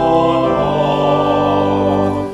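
Two-manual church organ playing sustained, full chords, with a chord change right at the start.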